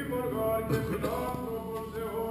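Byzantine chant of a Greek Orthodox vespers service: male chanting in long held notes that step from pitch to pitch.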